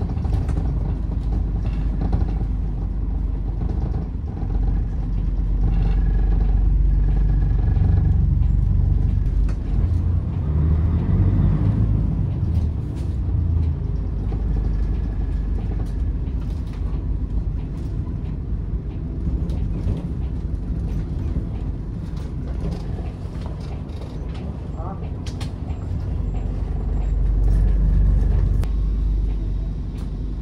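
City bus running on the road, heard from inside the cabin: steady engine and road rumble, with the engine note rising about ten seconds in as the bus pulls away, and growing louder again near the end.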